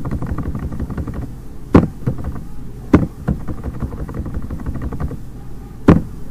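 Sharp clicks of a computer keyboard and mouse while text is edited. Three loud ones fall about a second apart in the middle and near the end, with fainter ticks between them, over a steady low hum.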